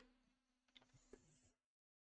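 Near silence: faint room tone with two tiny clicks, dropping to dead silence near the end.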